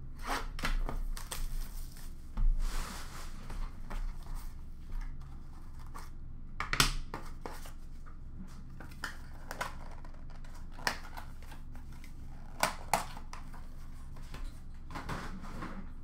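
Utility knife slicing open a sealed cardboard trading-card box, with scratchy cutting over the first few seconds. A sharp snap follows about seven seconds in, then scattered clicks and cardboard rustling as the box is opened.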